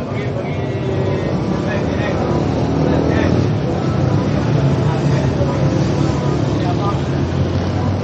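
Steady low engine rumble that grows a little louder about a second in, with indistinct voices chattering underneath.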